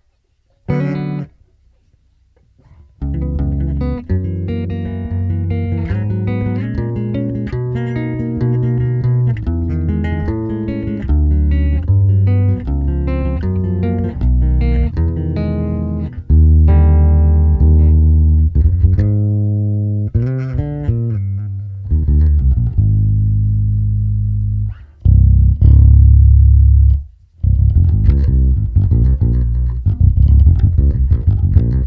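Electric bass played through a Zoom B6's Ampeg SVT amp model (gain 20, bass 7, treble 9, mids cut). After a couple of short notes and a pause of about two seconds, it plays a continuous line of notes, then several long held low notes near the end with brief breaks between them.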